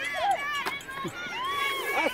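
Several spectators shouting and cheering at once, their rising and falling yells overlapping.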